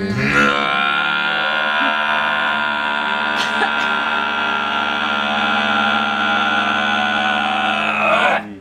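Men's voices holding one long, low chanted drone note, with a bright overtone held steady above it; it stops at the end.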